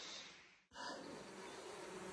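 Faint buzzing of a swarm of sandflies. It drops out for a moment just over half a second in.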